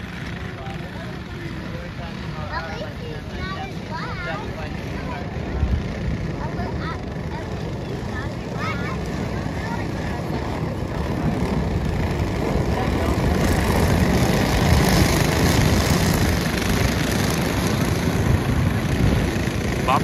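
A pack of racing go-kart engines running at speed on a dirt oval. They grow steadily louder as the field comes around toward the listener and are loudest about two-thirds of the way through, with people talking nearby in the first half.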